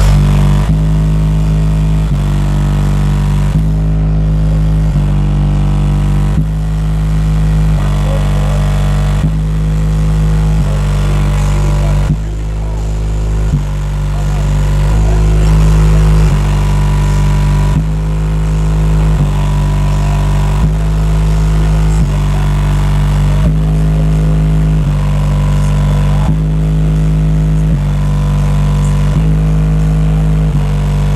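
A car audio system with sixteen 12-inch subwoofers plays a bass-heavy track at very high volume for an SPL meter run. Deep bass notes change about once a second in a repeating pattern.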